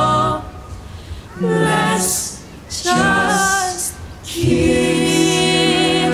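A cappella vocal group singing with no instruments. A held chord breaks off just after the start, two short sung phrases follow with gaps between them, and from about four and a half seconds the full group comes back in on a sustained chord over a low bass note.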